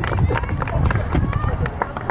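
People talking and chattering in the background, with scattered short clicks and knocks.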